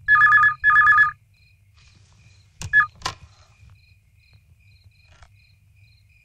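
Red desk telephone ringing: two quick electronic rings of steady paired tones in the first second. A third ring about two and a half seconds in is cut short between sharp clicks as the handset is lifted.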